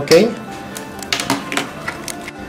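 Faint music and sound from a tablet's YouTube video, reproduced over an FM transmitter and heard through an earphone held near the microphone. Several light clicks come one to two seconds in.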